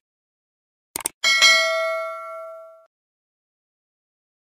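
Two quick clicks, then a bright bell ding that rings out and fades over about a second and a half: a mouse-click and notification-bell sound effect.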